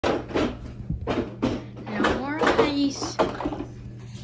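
Indistinct talking, with several knocks and bumps from handling, over a steady low hum.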